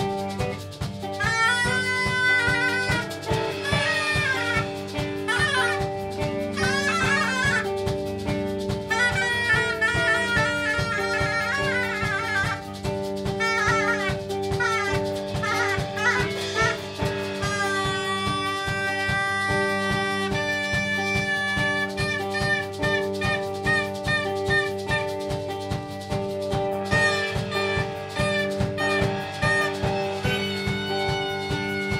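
A live rock band playing: a drum kit keeps a steady beat under electric guitars and held low notes, while a small end-blown wind instrument plays a wavering lead melody that comes and goes above them.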